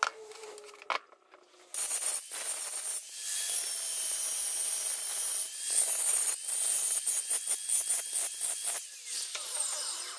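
Angle grinder with a diamond wheel grinding the face of a green stone boulder, starting about two seconds in and running in choppy stretches with brief dips, stopping just before the end. Before that come a few light knocks and scrapes of the stone being handled.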